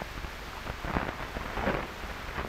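Hiss and crackle of an old optical film soundtrack, an even noise with a few faint clicks near the middle.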